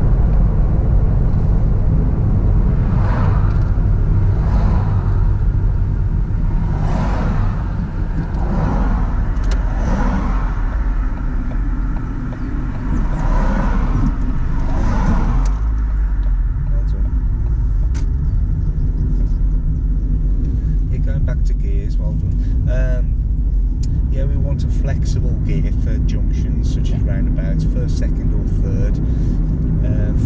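Steady low rumble of a car's engine and tyres heard from inside the cabin while driving on the road. Several times in the first half, passing vehicles swell up and fade as they go by.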